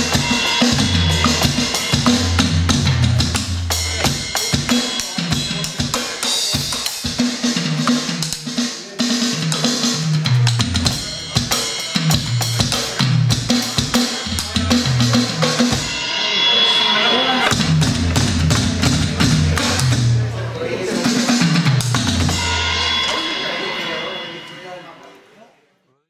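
Roland electronic drum kit played in a busy rock groove with fills, kick, snare and cymbal sounds coming from the kit's sound module. The playing fades out near the end.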